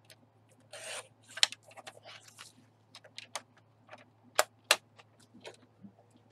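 Paper trimmer cutting cardstock: a short scraping rasp of the blade carriage sliding along the rail, then a softer scrape. Scattered sharp clicks and taps follow as the trimmer and paper are handled.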